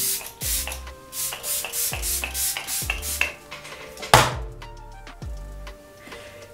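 Background music with a steady beat, with spritzes of a pump-action setting spray misting onto the face; the sharpest, loudest burst comes about four seconds in.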